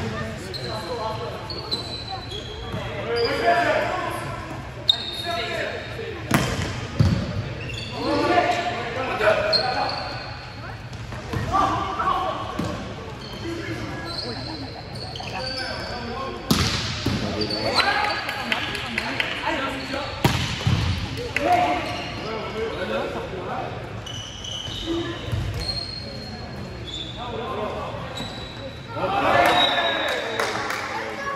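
Indoor volleyball play in an echoing sports hall: sharp smacks of the ball being hit and striking the floor, short high squeaks, and players' and spectators' shouts, which swell loudest near the end.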